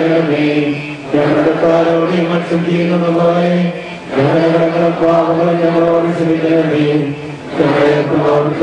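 A group of men, led by a priest at a microphone, chant funeral prayers in unison on a near-level pitch. The phrases last about three seconds, with a brief break for breath between them.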